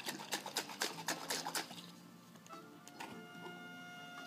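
Quiet background music with steady tones. Over it, in the first second and a half, comes a quick clatter of about eight sharp knocks as a plastic drink cup is handled.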